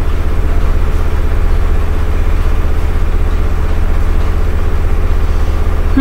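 A loud, steady low hum with a faint buzz above it, unbroken throughout.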